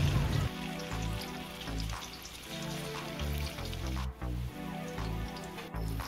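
Instrumental background music, with the faint sizzle of firm tofu (tokwa) slices frying in oil in a wok underneath.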